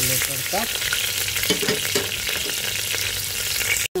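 Sliced ginger, garlic and green chillies sizzling in hot oil in a pressure cooker, a steady frying hiss. The sound drops out for an instant near the end.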